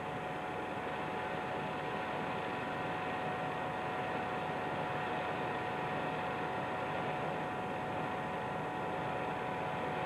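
Steady hiss and hum with a thin steady whine, unchanging throughout, with no distinct events: background noise of an old film-to-video transfer rather than any sound of the scene.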